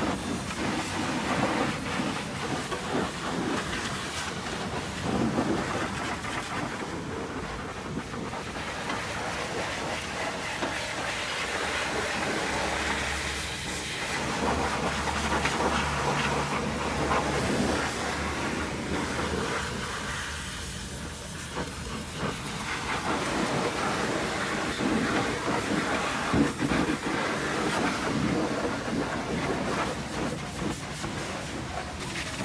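Pressure washer's high-pressure water jet spraying over a truck's diesel engine and front suspension: a steady hiss of spray on metal that swells and fades as the lance moves, with a low hum for several seconds midway.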